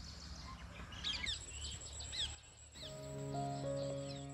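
Small birds chirping and calling in quick short notes over a low outdoor background hum. Near the end, soft background music with long held notes comes in.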